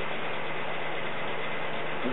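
Steady background hiss with a faint low hum, unchanging throughout: the recording's constant noise floor, the same that lies under the speech.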